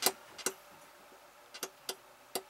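Four short, sharp clicks at uneven spacing, two of them close together near the end, over a quiet room.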